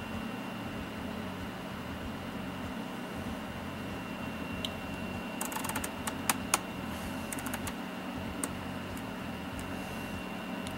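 Sharp clicks from the front-panel controls of a Tektronix 2430 digital oscilloscope being turned and pressed, a cluster of them a little past halfway and one more near the end. Under them runs a steady low hum with a thin high whine.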